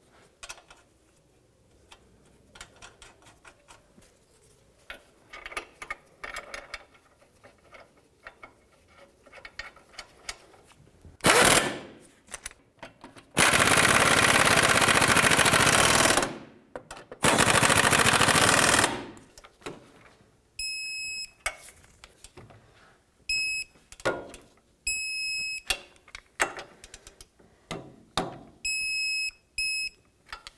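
An impact wrench runs in bursts on the ball joint nuts and bolt: a brief one about eleven seconds in, then two longer runs of about three and two seconds. In the last ten seconds a high electronic beep sounds several times, each lasting about half a second to a second, with clicks between, as the fasteners are torqued to 43 ft-lb with a beeping torque tool.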